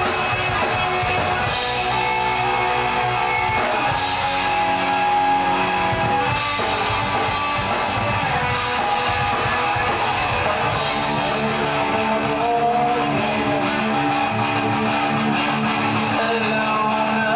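Rock band playing live: loud electric guitars over drums in an instrumental stretch without vocals.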